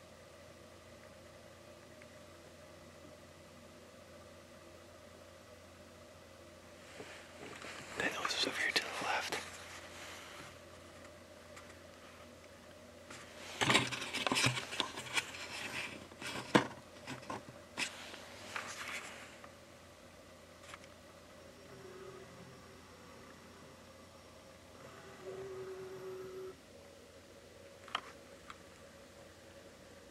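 Hushed whispering between people inside a parked truck's cab, in two stretches, over a faint steady hum.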